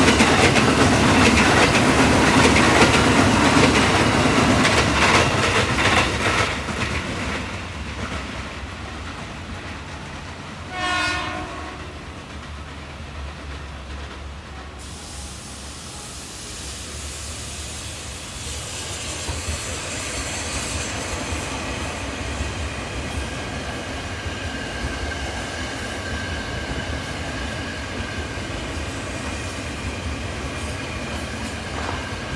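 KRL Commuter Line electric trains running by on the tracks. A close train passes with loud, rhythmic wheel clatter that fades away over the first six seconds or so. About eleven seconds in there is one short train horn blast, and from about eighteen seconds in another train comes on with a steady motor whine and wheel clicks, growing louder.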